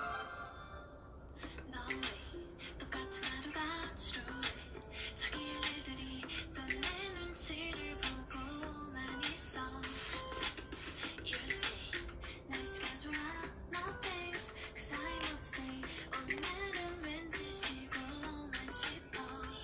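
A pop song with a female voice singing a melody over a steady beat.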